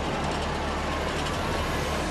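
A steady, dense rumbling noise at an even level with a low hum underneath, with no distinct blasts or impacts.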